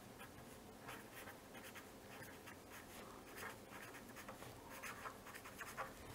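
Felt-tip pen writing on paper: faint, short scratchy strokes as a word is written out.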